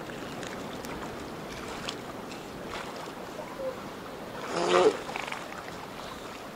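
A steady background of surf. About three-quarters of the way through comes one short, loud, raspy call from a juvenile northern elephant seal, lasting about half a second.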